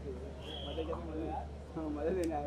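Indistinct voices of several people talking in the background, with a steady low hum underneath.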